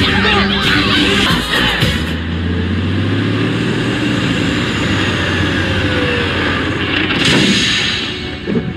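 Film soundtrack: busy music and effects that break off about two seconds in. They give way to a steady low hum of idling semi-truck engines under score. A louder rush of sound swells near the end.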